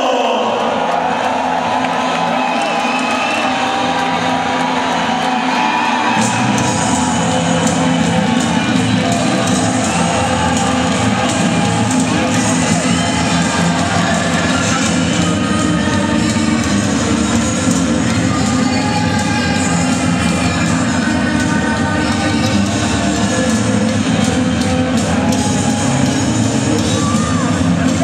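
Loud entrance music over a hall's PA with a crowd cheering and shouting; a heavier bass comes in about six seconds in.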